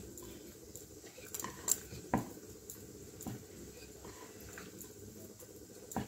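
Rolling pin working dough on a wooden chakla (rolling board): faint rolling and rubbing, with a few light knocks and clicks, the sharpest about two seconds in.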